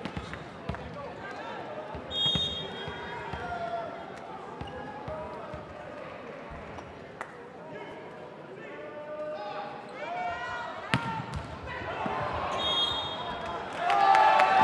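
Volleyball being bounced and struck during a rally, sharp smacks over a murmur of crowd chatter and players' calls.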